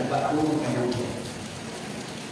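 A man speaking into a microphone for about the first second, then a pause filled with a steady hissing background noise.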